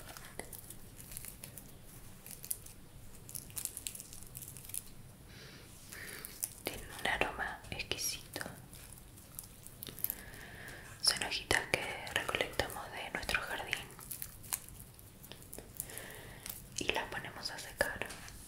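Soft whispering, with scattered light clicks and rustles of small objects being handled in a woven rope basket.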